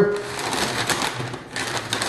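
Pink butcher paper crinkling and rustling as it is folded tight around a brisket, an irregular run of small crackles.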